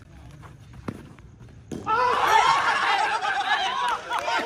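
A group of young men shouting and cheering excitedly all at once, breaking out suddenly after a quieter first two seconds that hold a single sharp knock about a second in.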